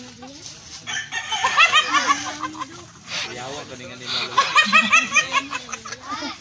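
A man laughing in two fits, about a second in and again about four seconds in, each a rapid run of high-pitched pulses.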